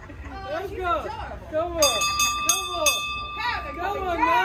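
People's voices without clear words, and a steady high ringing tone with a few sharp clicks for about a second and a half midway.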